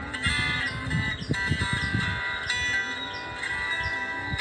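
Cutaway acoustic-electric guitar being played, chords and notes ringing continuously.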